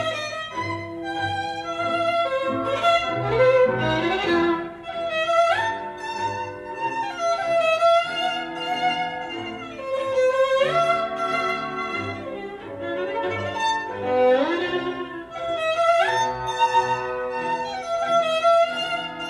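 Recorded violin music played back over a hi-fi loudspeaker system: a bowed violin melody that slides up to higher notes several times, over lower sustained accompanying notes.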